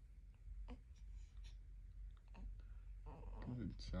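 Quiet room with a few faint clicks, then about three seconds in a short, wavering vocal sound that grows louder at the very end.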